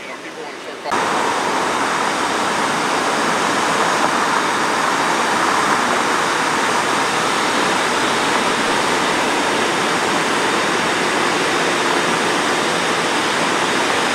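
A loud, steady hiss of rushing noise that starts abruptly about a second in and cuts off abruptly at the end.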